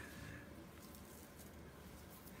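Near silence: faint room tone, with a brief soft noise fading out right at the start.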